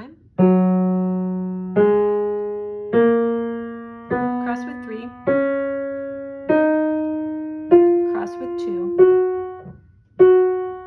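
Piano playing the F-sharp major scale ascending one octave with the left hand: eight slow, separate notes about a second apart, each rising in pitch from F-sharp to the F-sharp above and ringing out before the next.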